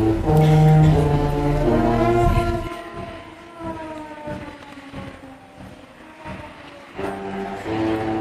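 Concert band playing sustained low brass chords, loud for the first few seconds, then dropping to a quiet passage with a fading high note. The full band comes back in loudly about seven seconds in.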